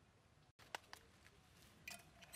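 Near silence, broken by two short faint clicks about a second in.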